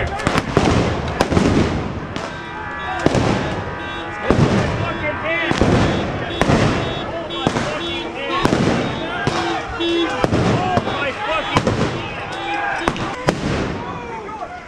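Crowd-control munitions going off again and again: a string of sharp bangs about a second apart, with a crowd shouting among them as police disperse it.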